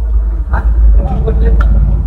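A vehicle engine running, heard inside the cab as a loud, steady low rumble.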